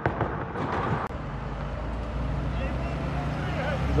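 Car crossing a large speed bump, with a clatter of knocks over the first second. Then a close passing vehicle's engine and tyre hum grows steadily louder toward the end.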